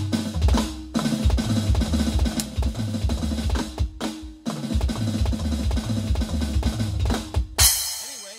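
Electronic drum kit playing a fast 16th-note triplet fill over and over: each group opens with a flam and follows with hand strokes and two bass drum kicks (sticking RLRRKK). It runs in three bursts with brief breaks about a second in and about four seconds in, and closes with a crash cymbal hit that rings out near the end.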